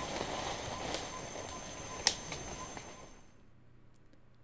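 Mountain gorillas moving through forest undergrowth: rustling of leaves and stems with a sharp snap about two seconds in, over a steady high whine. The sound fades out shortly before the end.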